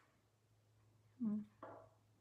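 A woman's voice making two short, soft murmured sounds a little over a second in, over a faint steady low hum; otherwise quiet room tone.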